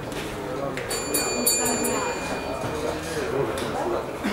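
Boxing ring bell struck in a rapid run of strokes about a second in, its metallic ringing fading over about two seconds, over murmured voices in the hall.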